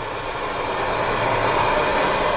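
Steady rushing noise of a propane burner heating a small pot of water close to 80 °C, growing slowly louder.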